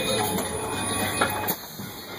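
Crown Supercoach Series 2 school bus running with a thin, high-pitched brake squeal as it slows for a stop. The squeal and the low drive hum cut off suddenly about one and a half seconds in, as the bus comes to rest.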